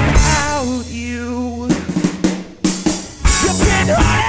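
Live rock band breaking down mid-song: a held note bending in pitch over a sustained low bass note, then a short drum fill of separate snare and kick hits, before the full band crashes back in about three seconds in.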